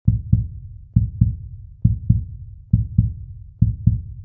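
Heartbeat sound effect: low double thumps (lub-dub), five pairs evenly spaced a little less than a second apart.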